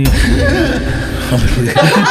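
A man's voice close to a microphone, making loud, breathy sounds without clear words, with a heavy low rumble of breath on the mic.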